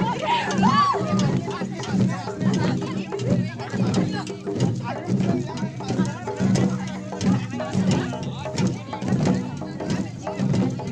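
Garo (A·chik) traditional dance music: a drum beaten in a quick, even rhythm over a steady low accompaniment, with voices in the first second.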